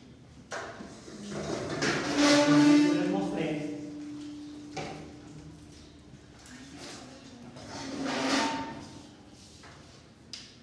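A metal tripod stand being dragged and set in place, scraping with a drawn-out squeal about two seconds in and scraping again near the end.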